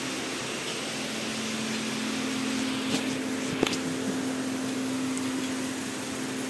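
Steady hum and hiss of a running motor, with two short clicks about three seconds in.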